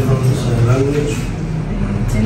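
Several students talking at once in pairs, their overlapping conversation turning into an unclear classroom chatter over a steady low hum.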